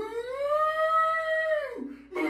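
A man's drawn-out, high-pitched vocal wail, rising in pitch, then held as one long note before breaking off near the end.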